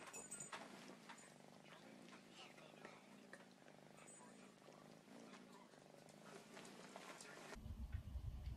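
Faint purring of a grey kitten curled up in a fuzzy blanket. About half a second before the end it cuts to a louder low rumble.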